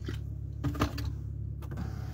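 Steady low hum inside a car cabin, with a few small clicks and a brief faint sound a little over half a second in.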